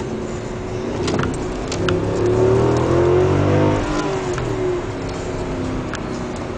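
Mercedes CLS 63 AMG's V8 engine heard from inside the cabin, accelerating hard. Its note rises in pitch and grows louder, peaks about halfway, then drops back at about four seconds as the throttle eases or a gear changes.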